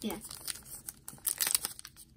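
Foil wrapper of a trading-card retail pack crinkling and tearing as fingers pull it open, a run of small irregular crackles.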